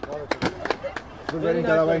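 Men's voices calling out across an open field, loudest near the end, with several sharp knocks in the first second.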